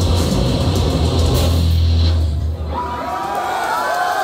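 Live rock band with electric bass, drums and cymbals playing the last loud bars of a song, which cut off a little over two seconds in. The crowd then breaks into cheering and shouting.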